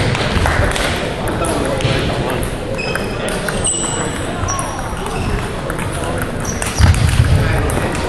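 Table tennis ball clicking off paddles and the table in a rally, with a pause in the middle before a serve and play resuming near the end; a few short high squeaks about three to four seconds in. A murmur of voices in a large echoing hall runs underneath.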